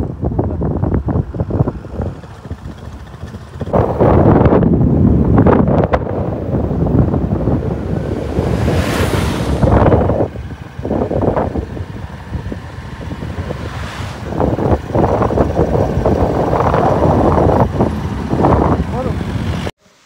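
Road noise from a moving vehicle with wind buffeting the microphone in irregular gusts, and a brief louder rushing swell about nine seconds in.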